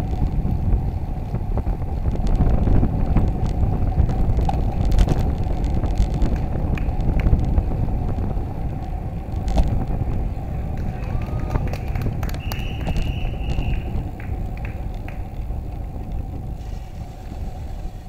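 Wind noise on the microphone and road rumble from a road bicycle rolling along a city street, easing off near the end as the bike slows. A few light clicks and a brief high steady tone about two thirds of the way through.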